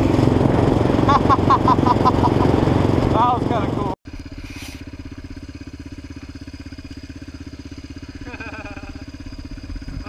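A loud intro sound with a voice-like wavering cry cuts off suddenly about four seconds in. It is followed by the steady idle of a Yamaha Raptor 700R's single-cylinder four-stroke engine.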